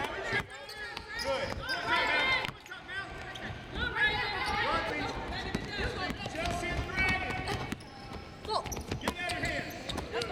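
Basketballs bouncing on a hardwood court, mixed with indistinct players' voices and calls in a large arena.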